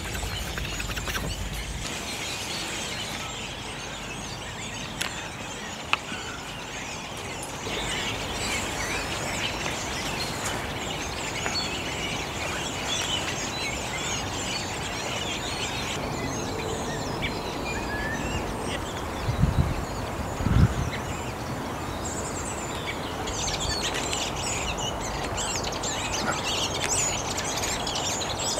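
Redwings, about ten to fifteen of them, singing sub-song together: a quiet, continuous warble of many overlapping twittering notes. Two short low thumps come a little past the middle.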